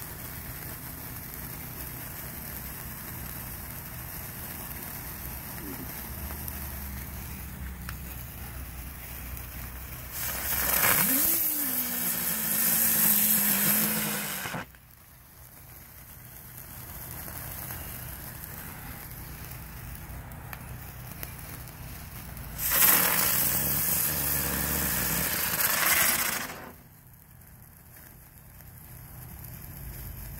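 Small handheld and ground fireworks burning: two loud hissing bursts of about four seconds each, one near the middle and one later on, each cutting off suddenly, over a steady low fizz.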